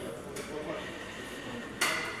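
Rear door of a Hyundai Elantra being swung open over quiet room tone, with one short sharp click near the end.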